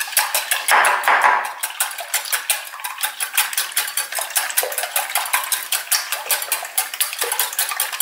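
Wire whisk beating eggs in a glass bowl: a rapid, even run of light clinks as the wires strike the glass.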